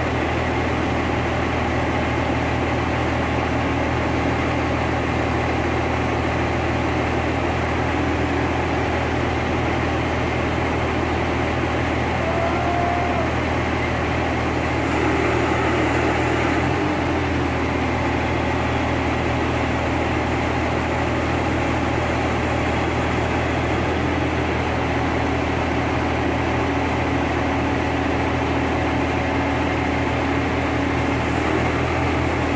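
SANY truck crane's diesel engine running steadily, a low, even drone that holds the same pitch and level throughout.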